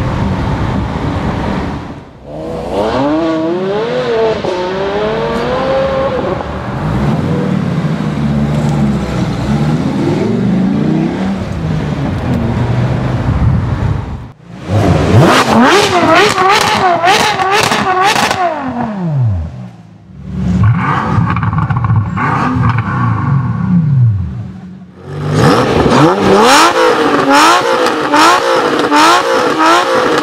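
Supercar engines revving hard in several short clips cut one after another, each a run of throttle blips rising and falling in pitch. Near the end the revs come in quick succession, about two a second.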